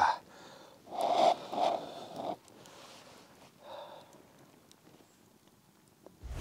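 A man sipping a hot drink from a wooden mug, making several short breathy sounds in the first two and a half seconds and a softer one near four seconds.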